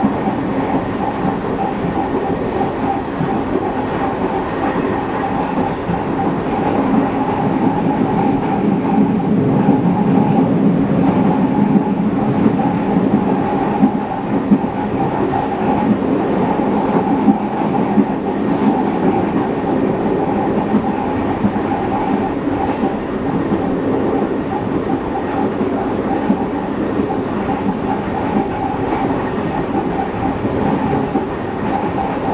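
Diesel engine of CP 1557, an MLW-built locomotive with an Alco engine, running steadily as it hauls the train, heard from right behind the locomotive over wheels running on rail. Two short high hisses come a little past halfway.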